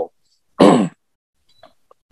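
A person clearing their throat once, a short rasp about half a second in that falls in pitch.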